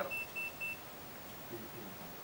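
A run of short, high electronic beeps at one pitch, about four a second, stopping under a second in.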